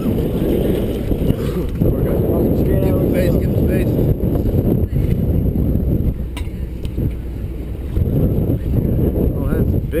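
Wind buffeting the microphone as a steady low rumble, with faint voices in the background.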